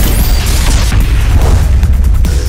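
Loud electronic soundtrack music with a heavy, steady bass, opening on a sudden booming hit.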